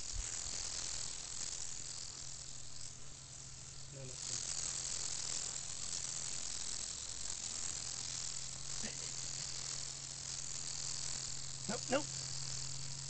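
A steady, high-pitched chorus of insects chirping, growing louder about four seconds in, over a low steady hum.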